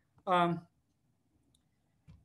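A man's single brief hesitant "um", with a faint click just before it and a fainter tick about a second later, from the computer as the lecture slide is advanced.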